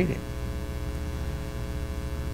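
Steady electrical mains hum, a low buzzy drone with a row of higher steady tones above it, carried on the sound system's recording. The last syllable of a spoken word fades out just at the start.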